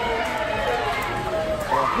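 Voices: talk and high-pitched calls over a steady low background hum.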